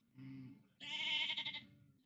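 Sheep bleating: a short, faint, low bleat, then a longer, louder, quavering bleat about a second in.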